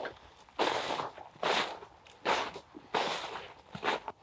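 Footsteps walking over snow-covered ground, four steps about 0.8 seconds apart.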